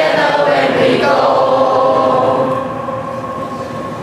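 Large group of teenage students singing together in unison, settling on a long held final note about a second in that fades away over the last second and a half.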